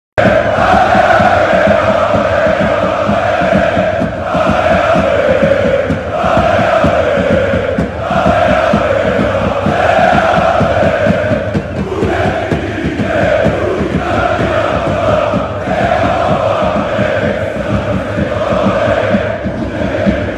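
A large crowd of basketball supporters chanting in unison, loud and continuous, with the sung phrase repeating about every two seconds.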